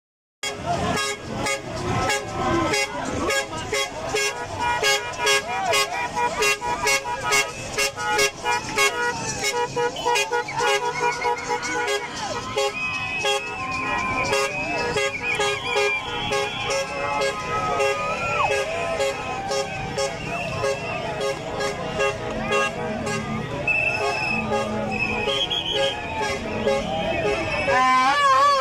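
Street protest crowd: horns tooting and held tones over shouting voices, with a fast regular beat, about three or four a second, through roughly the first twelve seconds. Later the beat fades and wavering high whistle-like tones and calls take over.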